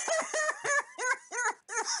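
A man laughing hard in a rapid run of short 'ha' bursts, about four a second, each one rising and falling in pitch.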